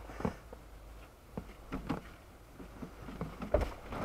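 Scattered light knocks and clicks over a low, steady vehicle-cabin rumble, growing louder and more frequent near the end.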